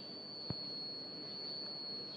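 A steady high-pitched whine held at one pitch through the pause, with a single sharp click about half a second in.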